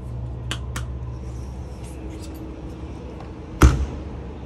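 A couple of small clicks of a key ring being handled, then about three and a half seconds in a single loud thump as a travel trailer's exterior storage compartment door is shut, over a steady low background hum.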